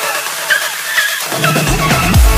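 Electronic dance background music: short pitched synth swoops, then a deep bass and a heavier beat come in about one and a half seconds in.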